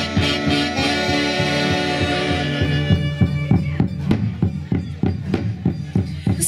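A live orquesta of saxophones and trumpets playing an instrumental passage: the horns hold long notes over a steady drum beat, then fall away about halfway through, leaving the beat.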